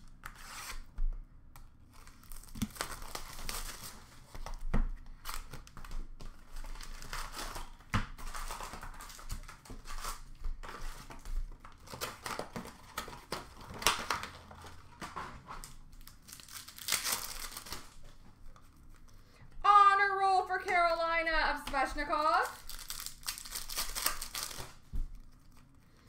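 Plastic wrapping of Upper Deck hockey card boxes and packs being torn open and crinkled by hand, with repeated irregular bursts of tearing and rustling.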